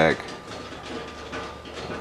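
A man's voice trails off at the start, then a short pause holds only quiet, steady background noise before speech resumes.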